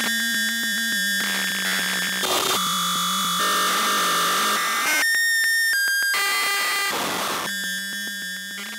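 Homemade mini lunetta CMOS synthesizer playing a glitchy patch with no effects: a steady low tone with many high tones stacked over it, switching abruptly between patterns every second or so, with short stretches of harsh noise.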